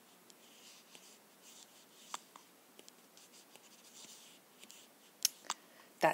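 Apple Pencil stroking and tapping on an iPad's glass screen: faint scratchy strokes with a few sharp taps, the loudest two near the end.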